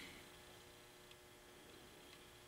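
Near silence: room tone with a faint steady hum and one faint tick about a second in.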